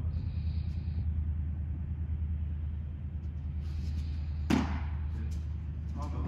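A baseball smacks once into a leather glove about four and a half seconds in, over a steady low hum.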